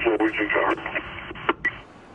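A voice coming over a police patrol car's two-way radio, thin and narrow-sounding over a steady hiss, ending about a second in, followed by a click and a short high beep.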